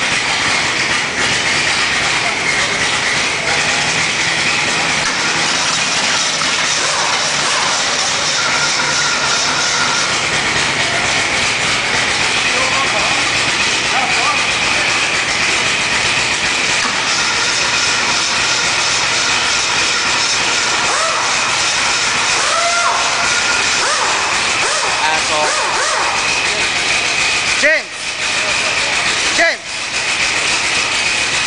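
Rebuilt Ford 302 V8 running steadily and unmuffled on an engine stand. It is bored 0.030 over and is missing a rod bearing cap on #1 and a second compression ring on #3. The sound drops out briefly twice near the end.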